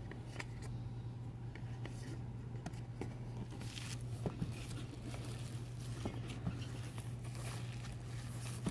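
Light handling noise from a cardboard box being turned over in the hands: scattered soft taps and brief rustles, over a steady low hum.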